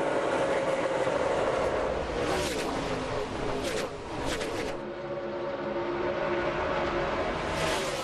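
A pack of NASCAR Craftsman Truck Series V8 race trucks running at full throttle on a restart. The engines overlap, and several trucks pass close by in quick succession between about two and four and a half seconds in.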